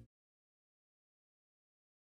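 Complete silence: the audio track is empty, with no sound at all.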